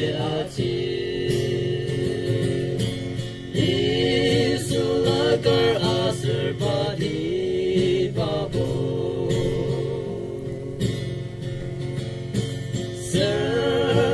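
Young men's voices singing a slow song together, with long held notes, to a strummed acoustic guitar, amplified through microphones.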